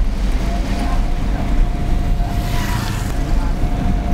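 A car's engine and road noise heard from inside the moving car: a steady low rumble with wind noise. A faint, steady, thin high tone joins about half a second in.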